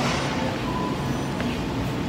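Background noise of a large warehouse store: a steady hum and rumble, with a short faint beep about three quarters of a second in.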